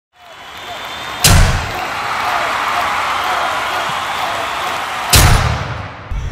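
Two sharp, booming thuds about four seconds apart over a steady rushing noise that fades in at the start.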